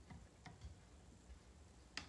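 Near silence with a few faint, light clicks as fingers handle and press a clear silicone stamp onto a wooden drawer front, the sharpest click at the end.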